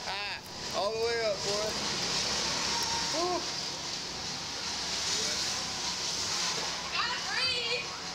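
Riders' voices: a drawn-out exclamation about a second in, a short call around three seconds, and a run of rising, laughter-like calls near the end, over a steady hiss.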